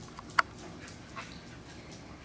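A puppy's single short, sharp yip about half a second in, followed by a fainter squeak a little after a second.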